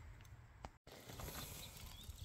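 Near silence: faint low background noise, with one small click and a brief dead-silent gap just before the one-second mark.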